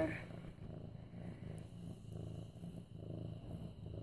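Orange tabby kitten purring while being stroked: a low, steady purr that swells and eases in a slow rhythm.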